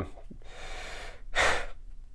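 A man's short, sharp breath about a second and a half in, as he chokes up with emotion.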